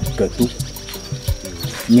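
Short vocal sounds from a man, with speech starting near the end, over a background music track with a steady high tone and even ticking.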